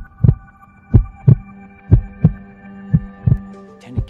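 A heartbeat sound effect: pairs of low thumps about once a second, the two beats of each pair about a third of a second apart, over a steady hum of several held tones.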